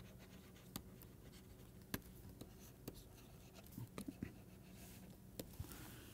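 A digital pen stylus on a tablet, writing: faint, scattered taps and light scratches as the words are written, a few separate clicks with a small cluster of them about two thirds of the way in.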